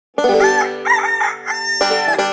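A rooster crowing over a held musical note, then banjo music starting near the end.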